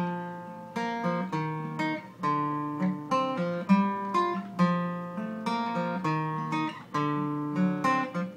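Acoustic guitar playing a song's intro: chords struck one after another, every half second to a second, each left to ring before the next.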